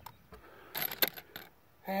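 Sharp metallic clicks of steel-cased 7.62×39 cartridges being pressed one at a time by hand into an SKS rifle's fixed magazine: a cluster of clicks a little under a second in, one sharper click just after, then a couple more.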